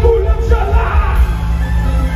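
Loud music with heavy bass from a parade float's sound-system truck, with a voice yelling over it.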